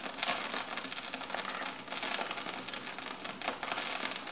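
Vinyl LP surface noise: a steady run of crackles and small pops over a faint hiss as the stylus rides the lead-in groove before the first track begins.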